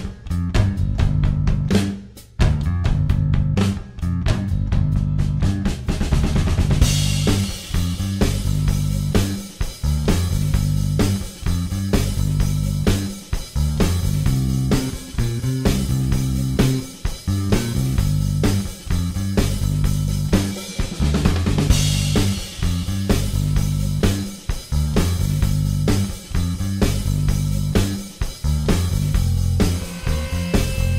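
Background music with a driving drum-kit beat and bass, cymbals joining in about seven seconds in.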